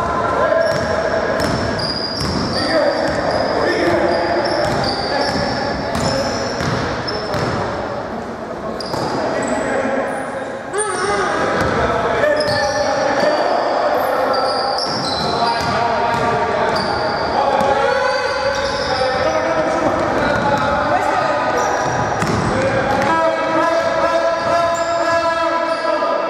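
Basketball bouncing on a wooden gym floor during live play, with irregular thuds, short sneaker squeaks and players' voices calling out, all echoing in a large hall.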